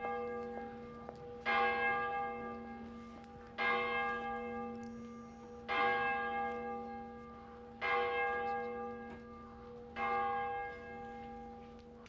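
A single church bell tolling slowly, six strokes about two seconds apart, each left to ring out and fade before the next: a funeral toll.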